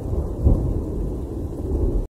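Recorded rain with low rumbling thunder, laid in as a sound effect at the end of a hip-hop track. The rumble swells about half a second in.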